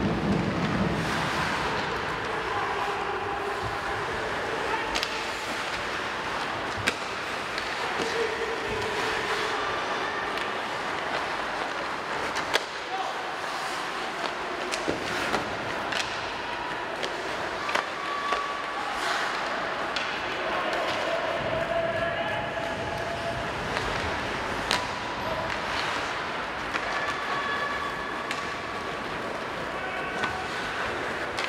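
Live ice hockey play: sharp clacks and knocks of sticks on the puck and of the puck against the boards, scattered irregularly, the loudest about 7 and 12 seconds in. Behind them run a steady hiss of skates on the ice and players' voices calling out.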